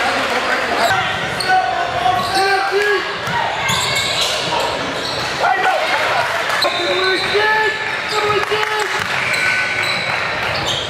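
Live sound of a basketball game in a large gym: a basketball bouncing on the court with frequent short knocks, amid players' and spectators' shouts and chatter.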